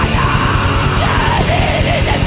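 Blackened punk played by a full band: distorted guitars, bass and fast drums under a yelled female vocal line.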